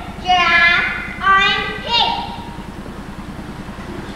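A young child's high-pitched voice making three short calls in the first two seconds, over a steady low hum.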